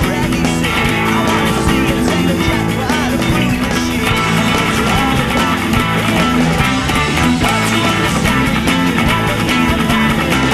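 Fender Road Worn 50's Stratocaster electric guitar, two layered parts played with fast picking and strumming over a rock band backing track with drums and bass.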